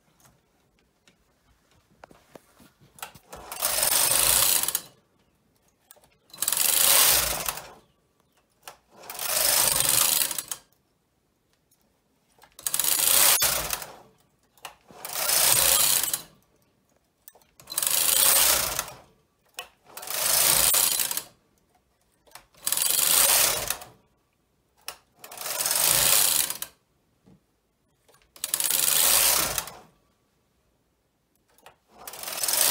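Carriage of a Brother 260 double-bed knitting machine, with its ribber attached, pushed across the needle beds: ten rushing, clattering passes of about a second and a half each, a second or two apart, each pass knitting one short row of a triangle.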